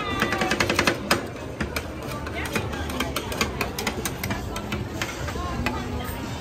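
Two metal scrapers chopping and tapping ice cream on a stainless-steel cold plate for rolled ice cream: quick rapid taps for about the first second, then slower, scattered taps and scraping, with voices in the background.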